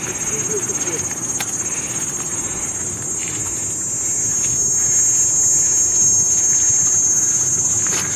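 Insects shrilling in a steady high-pitched drone, with a low rustling noise underneath that grows a little louder in the second half.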